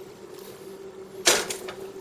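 A single clunk about a second in as a stoneware bean pot is set down on the stove, over a faint steady hum.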